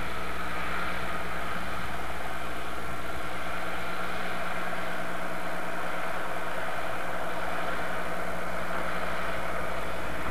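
Small farm tractor's engine running steadily, working hard as it pushes snow with a front blade.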